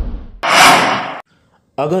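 Logo-animation sound effects: the deep tail of a whoosh fades out, then a short, bright, airy swish lasts just under a second, starting about half a second in. A man's voice starts near the end.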